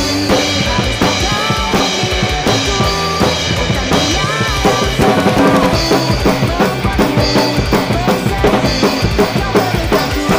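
Acoustic drum kit played live, with snare, bass drum and cymbals driving a fast rock beat, over a pop punk backing track of the song with pitched guitar or vocal lines.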